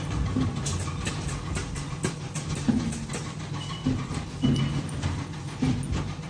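Factory workshop ambience: a steady low machine hum, with scattered light clicks and knocks as plastic-framed copper coil plates are handled.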